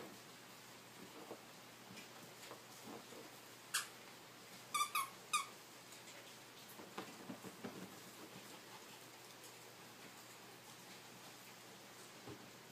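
A squeaky dog toy being squeezed: one short squeak about four seconds in, then three quick squeaks about a second later. Faint scuffling and light taps come before and after.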